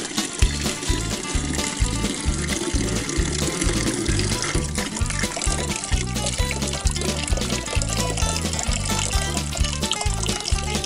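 Background music with a steady beat, over old battery acid pouring in a stream from a cell of a 6-volt L16 lead-acid battery into a plastic bucket. The stream thins toward drips near the end.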